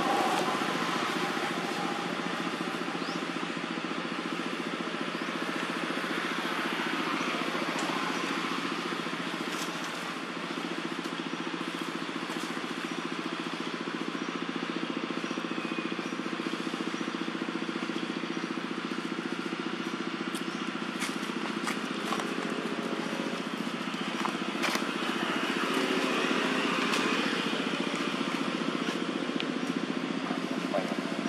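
A steady motor hum, engine-like, over a constant outdoor noise, with a few faint clicks scattered through it.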